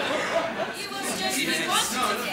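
Several people talking among themselves at once, overlapping chatter in which no clear words stand out, growing busier about halfway through.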